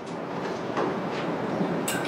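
Steady background noise in a room, slowly getting louder, with a few faint clicks.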